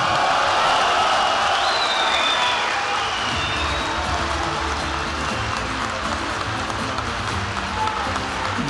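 A large audience applauding steadily, with music playing underneath that gains a low beat from about three seconds in.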